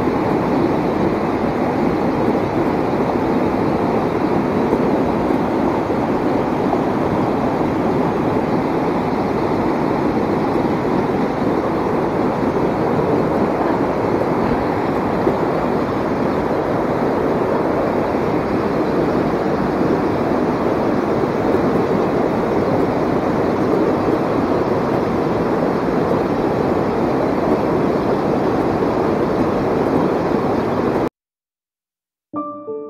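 Shallow rocky stream rushing over boulders and small cascades: a steady, unbroken rush of water.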